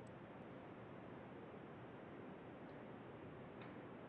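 Near silence: a faint steady hiss of the audio feed, with two faint clicks in the second half.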